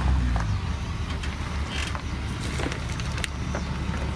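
Ford Super Duty pickup's engine running at low speed while the truck creeps in reverse over gravel, with scattered crunches and clicks of stones under the tyres.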